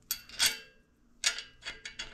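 Light metallic clicks of small steel ball-joint parts being handled and set on a steering knuckle: two near the start, then a quicker run of four in the second half.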